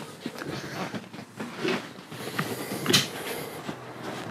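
Handling noise as a vehicle seat is lifted out of the cargo area: scattered knocks and clunks of its metal frame and plastic trim, with a sharp click about three seconds in.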